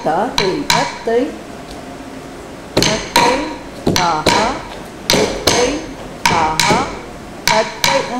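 Tattukazhi, a wooden stick beaten on a wooden board, keeping time for Bharatanatyam dance: sharp, briefly ringing strikes, mostly in pairs about a third of a second apart, with a pause of about two seconds near the start.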